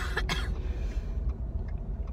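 A girl coughs twice in quick succession, then only the steady low rumble of road noise inside a moving car remains.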